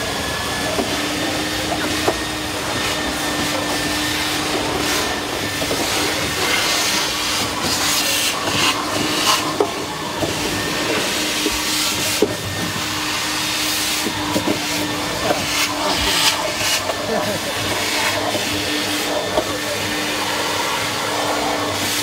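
Busy pit-garage ambience: a steady machine hum runs through nearly the whole stretch, with bursts of hissing, scattered knocks and clatter, and background voices.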